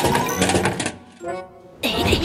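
Cartoon sound effect of a drinks vending machine dispensing bottles: a rattling clatter of bottles dropping into the tray in the first second, then a short pitched sound and a voice coming in near the end.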